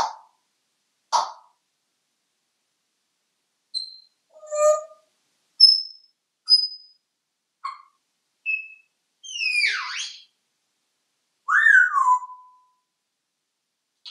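African grey parrot giving a string of separate clicks and whistles. Two sharp clicks open it, then short high whistle notes follow. About ten seconds in comes a falling sweep, and near the end a whistle that rises and then falls.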